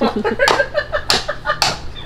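Hand hammer striking a piece of dry aquarium reef rock three times, about half a second apart, in an attempt to split it into two shelf rocks; it does not split.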